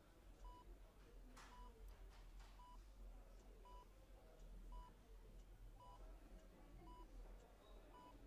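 Faint hospital heart-monitor beep: a short, high single-pitched tone repeating evenly about once a second, over quiet room tone.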